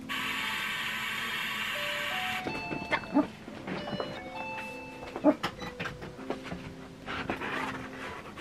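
Background music with a loud, steady buzzing sound for about the first two and a half seconds, then a few knocks.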